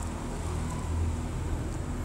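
Steady low rumble of background noise, with no voice and no distinct events.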